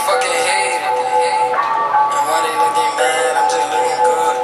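A hip-hop track with rap vocals over a synth beat of held notes, thin and with no deep bass.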